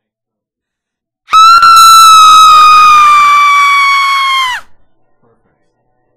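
A single long, high-pitched scream, held for about three seconds with its pitch sagging slightly, then sliding down as it cuts off.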